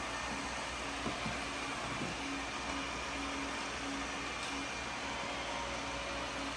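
Steady low household hum with a faint tone pulsing in short even dashes, and a few light clicks about a second and two seconds in as a plug and thin light wiring are handled.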